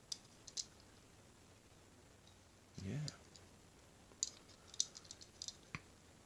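Light, sharp clicks of fingers and fingernails against a small die-cast metal model car as it is turned over in the hand. Two clicks come near the start and a quick run of several clicks in the second half.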